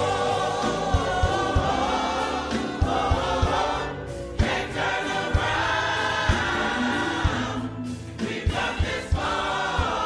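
Gospel choir singing long held chords over a steady low beat from the accompaniment, with short breaks between phrases about four and eight seconds in.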